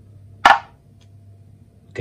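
A metal washer from the wiper assembly set down on a plastic kitchen scale: one sharp clack about half a second in.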